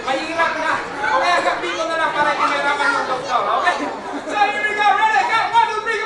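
Many people talking at once: loud overlapping chatter.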